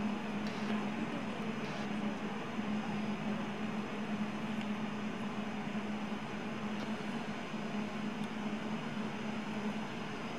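Steady hum and hiss of an indoor ice rink's machinery, a constant low drone under an even hiss, with a few faint brief scrapes.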